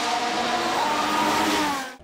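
Formula 1 car's 1.6-litre turbo-hybrid V6 at high revs on the circuit, a high engine note that wavers slightly in pitch and cuts off suddenly near the end.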